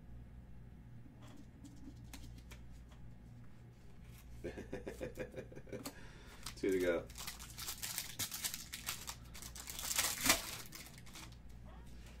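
Hard plastic card holders clicking and knocking as they are handled, then a longer stretch of plastic crinkling from about seven seconds in, loudest a little after ten seconds. A brief voice sounds twice in the middle.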